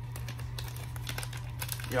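Faint crinkling and small clicks, bunched just after the start and again shortly before the end, over a steady low hum. A voice begins right at the end.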